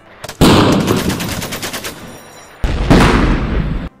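Machine-gun fire sound effect: a long burst of rapid shots that starts loud and fades, then a second loud burst about two and a half seconds in that cuts off suddenly.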